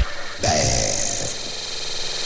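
Breakdown in a hardcore gabber track: the pounding kick drum cuts out, leaving a hissing synthesized noise wash with a falling tone about half a second in.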